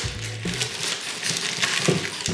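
Crunching and scraping of dry potting soil and roots as a wooden stick is pushed up through the drain hole of a small terracotta pot to force out a pineapple plant's root ball, in short irregular crackles.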